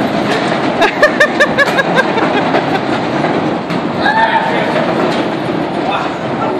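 Giant wooden walk-in wheel rumbling and clattering as people run inside it to turn it, with voices calling out over it.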